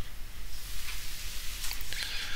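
Pause between narrated lines: a steady low hum with faint hiss from the recording, and a soft burst of noise near the end.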